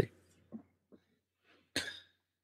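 A pause of near silence, then a single short cough from a person near the end.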